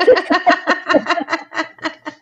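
Women laughing hard, in a quick even run of 'ha-ha' pulses, about six a second. A faint steady high tone runs underneath.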